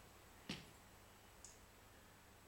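Near silence: faint room tone with a single short click about half a second in.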